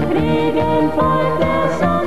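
German volkstümlicher Schlager song: a woman and a man singing together over acoustic guitar, with accordion and brass band backing and a steady oom-pah bass line.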